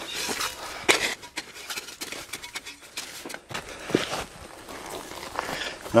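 Hands rummaging through loose garden-bed soil and potato plants, giving scattered rustles, small crackles and light ticks, with shuffling steps along the bed.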